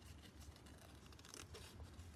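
Faint snips of small scissors cutting thin white paper, a few quiet cuts around a flower-shaped cutout.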